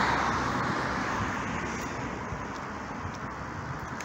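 Road traffic: a car passing close by, its tyre and road noise fading steadily as it moves away.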